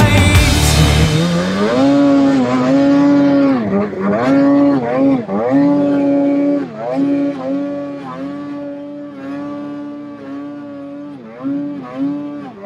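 Ski-Doo snowmobile engine revving under throttle while climbing through deep snow. Its pitch holds high and dips and recovers every second or two as the throttle is eased off and reapplied. Background music fades out in the first second or so.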